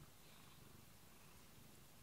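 A cat purring faintly, a low, steady rumble.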